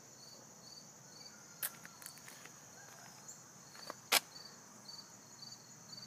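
Faint insect chirping: a steady high-pitched drone with a pulsed chirp about twice a second. Two sharp clicks stand out, the louder one about four seconds in.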